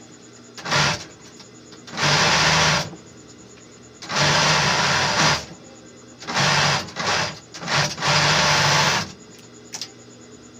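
Industrial overlock sewing machine stitching fabric in stop-start runs: about seven bursts, each lasting under a second to just over a second, with short pauses between as the fabric is guided through.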